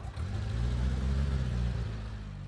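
Car engine running as the car drives, growing louder just after the start and easing off again near the end.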